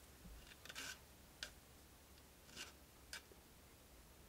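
Faint, short strokes of a tiny file on a guitar neck's fret ends: four brief scrapes and ticks spread apart, with near silence between them. The sharp fret ends are being filed down one at a time.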